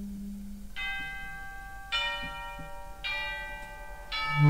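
Three bell notes struck on orchestral tubular bells about a second apart, each ringing on under the next, the second the loudest. A held low note dies away just before the first strike.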